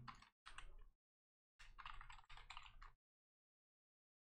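Faint typing on a computer keyboard: a few short runs of quick keystrokes, the longest from about one and a half to three seconds in.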